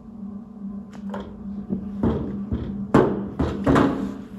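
Solid beeswax blocks being handled, lifted off a plastic digital scale and set on a counter: a few knocks and scrapes, the loudest about three seconds in and just before the end. A steady low hum runs under it.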